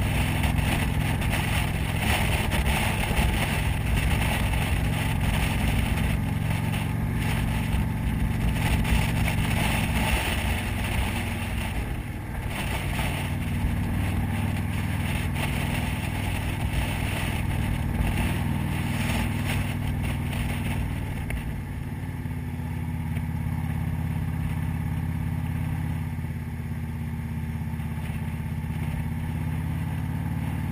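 Motorcycle engine running at road speed, heard from the rider's position with wind rushing over the microphone. The engine note shifts twice, about twelve and twenty-one seconds in, as the throttle changes.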